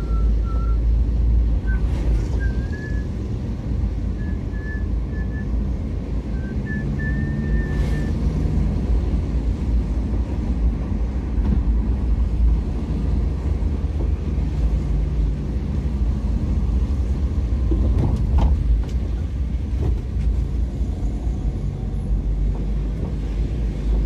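Steady low rumble of a moving vehicle on the road, engine and tyre noise mixed with wind on the microphone.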